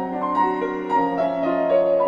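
Steinway grand piano played solo: several held notes sounding together, with new notes struck every fraction of a second at a moderate pace.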